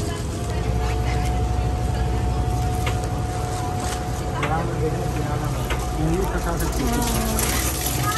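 Tour boat's motor running steadily, a low rumble with a steady whine over it, against a wash of water noise. Voices talk in the background in the second half.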